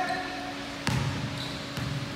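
A basketball being dribbled on a hardwood gym floor: one firm bounce a little under a second in, ringing briefly in the hall, then a fainter bounce near the end.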